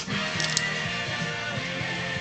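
Background music playing steadily, with a brief click about half a second in.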